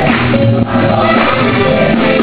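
Church choir singing a gospel song.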